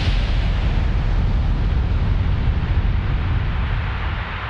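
Explosion sound effect: the deep, heavy rumble of a huge blast rolling on, its higher hiss slowly thinning out. It stands for the Earth bursting apart.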